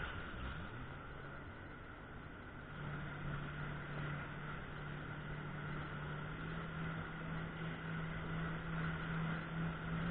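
Jet ski engine running at cruising speed over a wash of water noise. The engine tone is weak for the first couple of seconds, comes back strongly about three seconds in, and rises slightly in pitch around the middle as the throttle opens a little.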